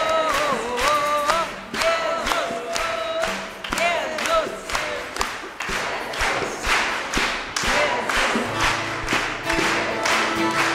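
A worship song sung by a group of voices, with hands clapping and bongos played by hand on a steady beat. Near the end a sustained low bass note and held instrument notes come in.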